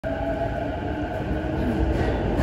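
Inside the passenger car of a JR electric commuter train just after departure: a steady low running rumble with faint level humming tones above it.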